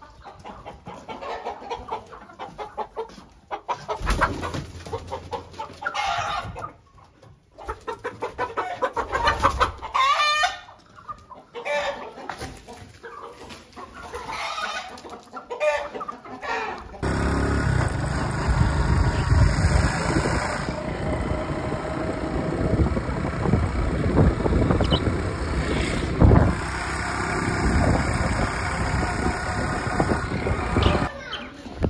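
Domestic chickens clucking, with a rooster crowing. After about seventeen seconds it cuts to a steady, loud rush of wind on the microphone.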